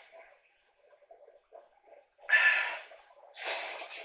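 Udon noodles slurped from a bowl with chopsticks: two loud, noisy slurps about a second apart, the first the louder, after a few faint small sounds.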